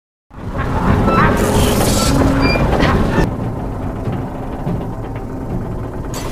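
Film soundtrack of a train wreck scene: a dense mix of noise with music underneath. It starts after a moment of silence, is loudest for about three seconds and then eases.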